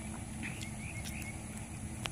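Quiet outdoor ambience: a steady low rumble with a few faint bird chirps about half a second to a second in.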